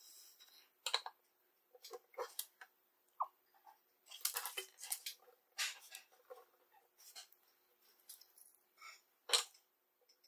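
Small irregular clicks and rustles of wires and crimp terminals being handled and set into the alligator clips of a helping-hands stand, with a sharper knock near the end.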